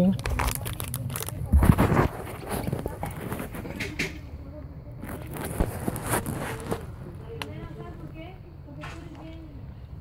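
Foil-lined plastic snack sachets crinkling as they are handled in gloved hands, busiest and loudest in the first couple of seconds, then quieter rustling.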